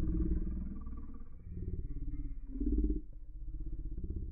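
Slow-motion playback audio: voices and room sound slowed down into a deep, drawn-out growl, swelling in loudness a couple of times.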